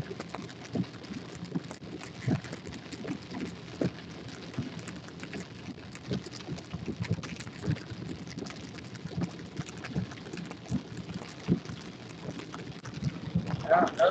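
Rain striking a car's windshield and roof, heard from inside the moving car as a steady wash with many irregular taps. Just before the end, a brief voice-like sound.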